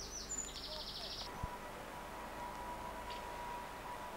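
A bird sings a short, high, rapid trill in the first second, over quiet outdoor background noise. A faint steady tone runs from about a second in, and a single soft knock comes about a second and a half in.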